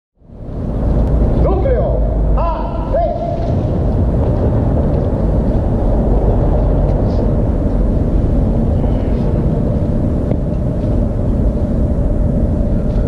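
Steady low outdoor rumble, with a few short voice calls between about one and a half and three and a half seconds in.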